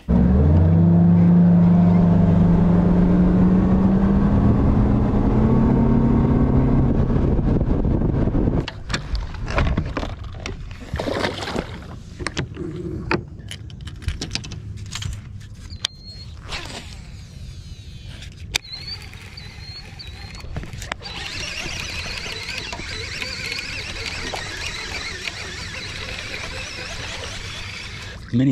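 Bass boat outboard motor running and rising steadily in pitch as it speeds up for about eight seconds, then cutting out. After that, quieter scattered clicks and knocks on the boat deck.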